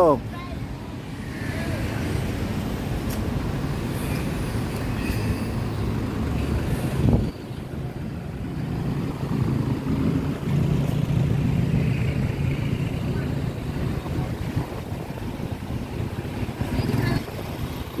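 Street traffic of cars and minivans moving slowly close by, a steady low engine rumble.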